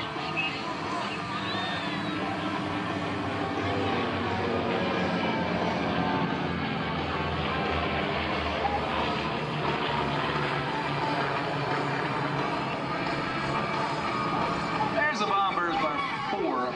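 Several Van's RV-8 single-engine piston aircraft passing over in formation as they split in a bomb burst, their propeller engines droning steadily, a little louder from about four seconds in. Music and voices run underneath.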